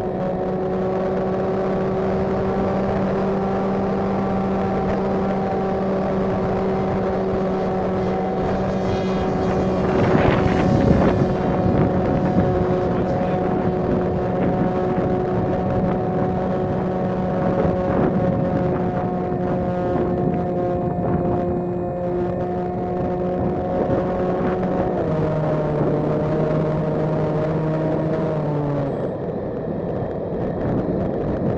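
GoDiscover flying wing's motor and propeller, heard from its onboard camera, running at one steady pitch, with a brief rush of wind about a third of the way through. Near the end the pitch steps down and then falls away.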